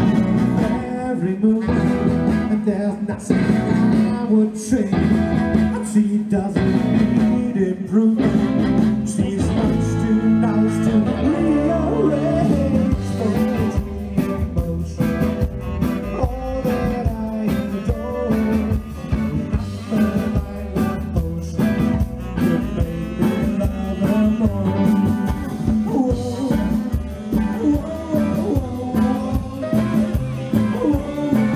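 Live band playing rock and roll: electric guitar, saxophone and bass with drums, and a singer.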